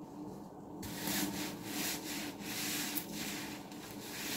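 Large coarse-pored sponge squeezed and worked between the hands, giving a gritty, scratchy crunch in repeated strokes a few times a second, starting about a second in.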